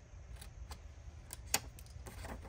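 Scissors snipping vellum paper and being handled: a handful of light, sharp clicks, the loudest about halfway through.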